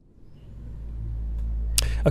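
Music fading out at the very start, then a steady low rumble of outdoor background noise picked up by a handheld microphone. A man starts to speak right at the end.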